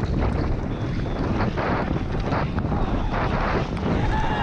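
Wind rushing over the microphone of a downhill mountain bike at speed, with the tyres and bike rattling over a rough dirt trail. The rush is steady, with a few short surges of hiss.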